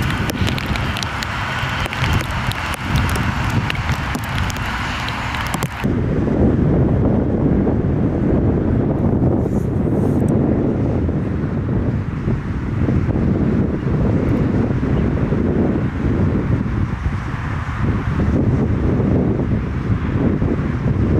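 Boeing 747 freighter's four jet engines running close by as it taxis, a full hiss with a high whine. After a sudden cut about six seconds in, the jet's engines give a deep, low rumble from further off, heavily buffeted by wind on the microphone.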